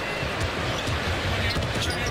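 A basketball being dribbled on a hardwood court, a run of irregular low bounces, over a steady wash of arena noise.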